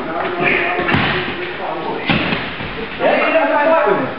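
A few dull thumps of feet and bodies on a padded wrestling mat during a takedown scramble, with men's voices over it in a large echoing gym.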